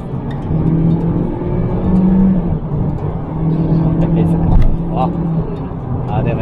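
The 2-litre four-cylinder engine of a Toyota Corolla Touring Active Ride, heard from inside the cabin, pulling hard under acceleration. It holds a steady drone that steps up in pitch about two seconds in, then settles back.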